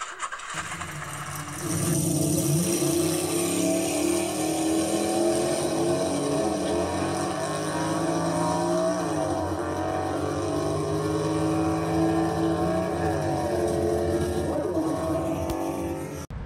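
A hot-rod car engine with a supercharger running steadily, growing louder about two seconds in. Its pitch rises and falls slightly a few times as it is revved lightly.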